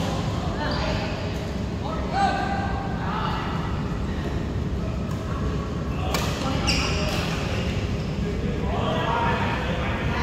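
Badminton racket strikes on a shuttlecock during a rally: a few sharp hits about six to seven seconds in, in a large indoor hall. Voices are heard around them.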